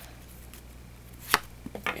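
Yu-Gi-Oh! trading cards being handled: one sharp tap of cards a little past halfway, then two lighter taps near the end, over a faint steady hum.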